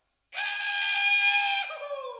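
A high, wailing call with a clear pitch, held steady for about a second and a half, then sliding down in pitch as it fades, set into an ambient music recording.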